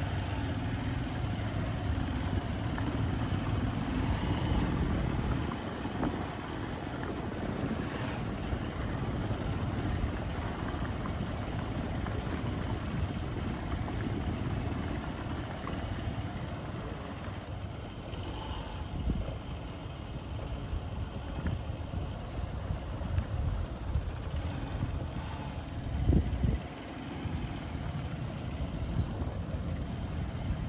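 Steady low rumble of stalled road traffic: truck and bus engines idling in a long queue, with a brief louder low bump about four seconds before the end.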